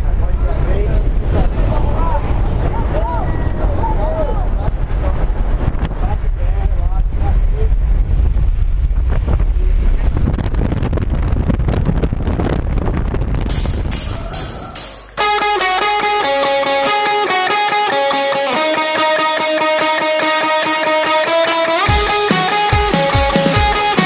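Loud, steady low rumbling noise with faint voices under it, fading out about fourteen seconds in. After that, rock music with electric guitar begins.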